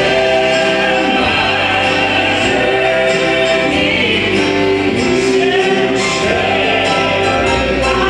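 A mixed gospel vocal quartet, three men and a woman, singing in harmony through microphones and a sound system, with electric keyboard accompaniment.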